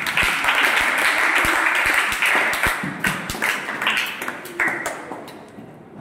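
Audience applauding, with many sharp claps, gradually dying away over about five seconds.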